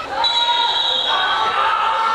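Referee's whistle blown once, a steady shrill tone lasting under a second, the signal for the penalty kick to be taken. People's voices are heard around it.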